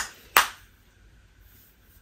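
Two sharp plastic clicks about a third of a second apart as a round powder-blush compact is snapped shut and handled, the second click the louder.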